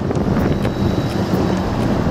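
Steady wind rumble on the microphone of a bicycle-riding vlogger's camera, mixed with the running engine and tyres of a heavy lorry overtaking close alongside.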